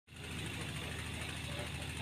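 A steady low engine hum, like a motor vehicle idling, fading in at the very start.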